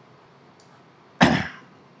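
A man coughs once, a little over a second in: a single short, sharp cough that fades quickly.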